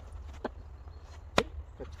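Two sharp smacks of an open-hand strike landing on a training partner's body: a faint one about half a second in and a loud, crisp one later. A low wind rumble on the microphone runs underneath.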